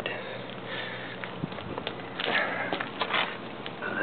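Close breathing and sniffing near the microphone, with a few scattered small clicks and rustles.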